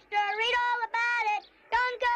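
A child's high voice singing or calling out in long, held sing-song notes, about four in a row.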